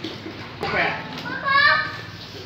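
A young child's voice making short wordless sounds: a brief vocal sound about half a second in, then a high-pitched drawn-out note lasting about half a second near the end. A single light click comes just before the first sound.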